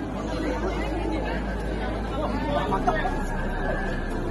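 Chatter of a crowd: many people talking at once, none clearly, with one voice standing out in the second half.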